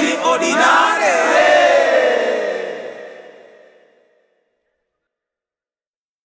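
Closing chanted vocals of a Swahili rap track with the beat gone: the voices slide down in pitch and fade out over about three seconds.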